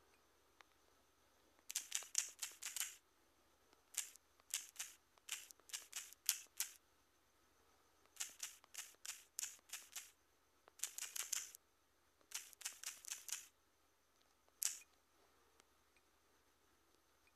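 Key taps from typing on a smartphone's on-screen keyboard: quick bursts of sharp clicks, several taps at a time, with short pauses between bursts and a single tap near the end.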